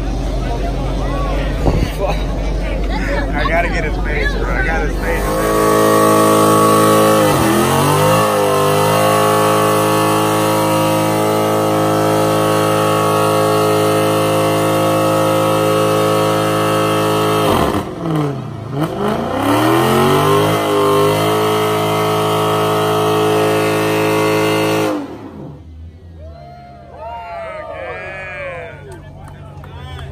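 Dodge Challenger engine held at high revs during a tyre-smoking burnout. Starting about five seconds in, it runs as a loud, steady high drone. The revs drop and climb back twice, then it cuts off suddenly near the end, leaving crowd voices.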